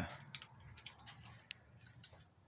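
Faint handling noise: a few scattered light clicks and ticks over quiet room tone, as things are moved about.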